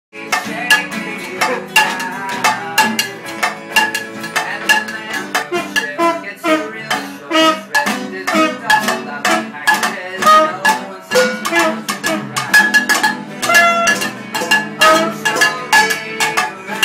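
Live acoustic jam: acoustic guitars strumming a steady rhythm while a saxophone plays a melody over them.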